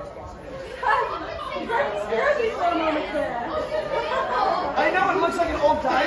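People talking, several voices overlapping in chatter, after a quieter first second.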